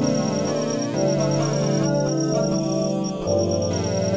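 Omnisphere software synth presets auditioned as sustained organ-like keyboard chords. The chord changes about a second in, and again a little after three seconds.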